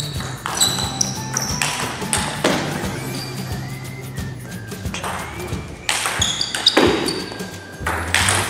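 Table tennis rally: the ball being struck by bats and bouncing on the table several times, each hit ringing out in a large hall, under background music with steady low bass notes.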